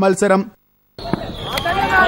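Outdoor crowd chatter and shouting at a thalappanthu ball game, with a couple of sharp smacks of the ball being struck by hand. Before that, half a second of male news narration ends in a brief silent cut.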